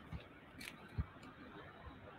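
Quiet room tone with a few faint, short clicks; the clearest is about halfway through.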